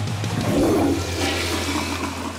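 Cartoon sound effect of rushing floodwater: a loud, steady wash of water noise over a low steady hum.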